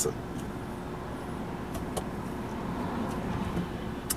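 Steady low hum of a car idling at a traffic light, heard from inside its cabin, with other cars passing in front. Two faint clicks come about two seconds in.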